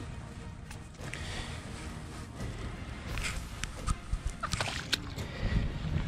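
Low wind rumble on the microphone, with scattered scuffs and short clicks as a freshly caught snook is picked up by hand and handled over wet sand and shallow water.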